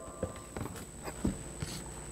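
A few soft, irregular knocks and rustles of handling: a Bible and items being handled at a wooden lectern, over faint room noise with a steady high whine.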